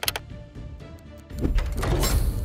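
Background music with a quick run of sharp clicks right at the start as the letter button on the sign is pressed, then a loud swelling whoosh sound effect about a second and a half in.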